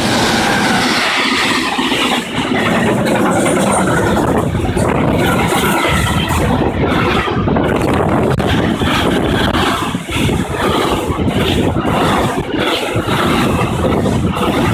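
Electric freight train passing close by: a DB electric locomotive followed by a long line of intermodal wagons carrying curtain-sided trailers. It makes a loud, steady rumble and rush of wheels on rail.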